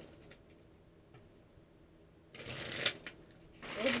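A deck of tarot cards being shuffled by hand: two short bursts of shuffling in the second half, after a quiet couple of seconds.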